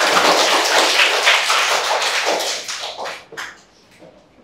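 A classroom of children clapping together, a loud round of applause that dies away after about three seconds.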